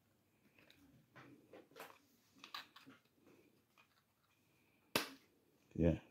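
Faint clicks and rustles of small plastic parts being handled and fitted into a refrigerator air damper's plastic gear housing, then one sharp plastic click about five seconds in.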